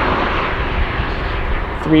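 Traffic noise from a car going by on the highway, a steady rushing of tyres and engine that slowly fades as it moves away.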